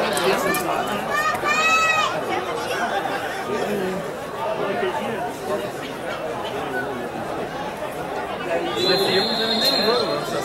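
Spectators chattering and calling out at a football match, with one rising-and-falling call about a second and a half in and a high, steady whistle blast held for about a second near the end.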